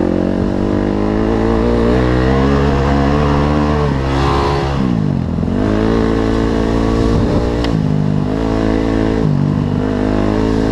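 Dirt bike engine under way on a trail, its pitch climbing under throttle, then dropping sharply about five seconds in as the throttle is shut. It climbs again with two brief dips in pitch near the end.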